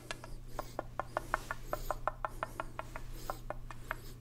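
Mouth clicks and tongue pops made into a corrugated plastic pop tube, in a quick, uneven run of about six or seven a second. A couple of soft breathy hisses come between them.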